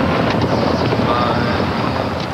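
SUV ploughing through deep snow, a loud steady rushing noise of the vehicle and flying snow, with wind.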